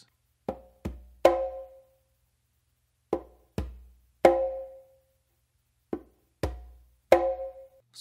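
Conga played by hand: a three-stroke figure of finger tap, bass, then a ringing open slap, played three times. The last stroke of each group is the loudest.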